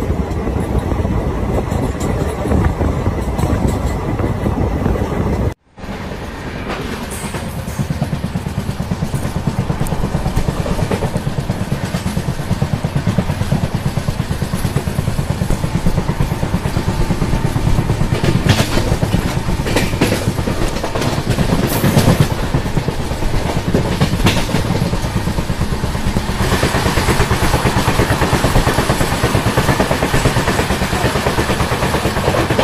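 Running noise of a moving Indian Railways passenger train heard from an open coach door: steady wheel-on-rail rumble and clatter. The sound cuts out briefly about five and a half seconds in, and near the end a louder, hissier rush comes in as another train passes close alongside.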